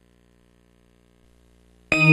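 Near silence with a faint low hum, then near the end a sudden loud metallic bell-like strike that keeps ringing with many overtones, opening a station ident's music.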